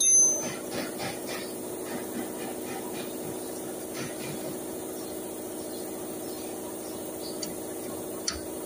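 Hand work on a pickup's front disc brake caliper: a short, high-pitched metallic squeal right at the start, then a few light metal clicks and taps. A steady hum runs underneath.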